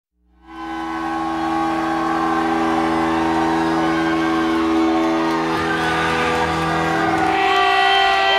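Live rock intro: a sustained, droning electric guitar chord fades in and rings on. Bent notes slide up and down near the end.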